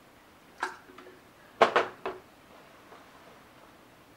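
A woman's short breathy gasps, reacting to cold water just poured over her face: one gasp, then a quick cluster of three about a second later.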